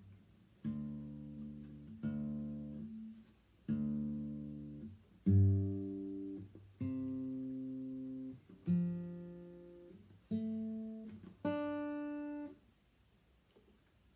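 Acoustic guitar being tuned: eight separate plucks or strums, each left to ring for about a second and then stopped, the pitch changing from one to the next while the tuning pegs are turned. Quiet after the last one, near the end.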